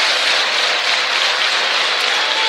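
Steady crowd noise from the spectators in an ice hockey arena, an even wash of many voices and clapping with no single event standing out.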